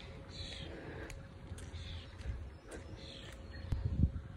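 Faint outdoor ambience: birds chirping softly in short phrases, with a steady low rumble and a few light clicks.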